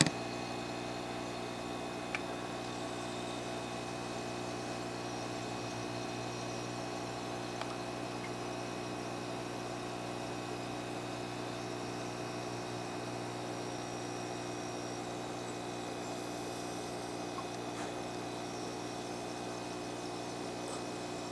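A steady machine hum made of several held tones, with a few faint clicks.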